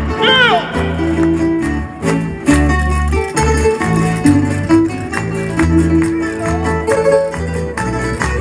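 Traditional Canarian folk string ensemble playing an instrumental passage between sung verses: strummed acoustic guitars and other plucked string instruments carry a steady rhythm over repeating bass notes.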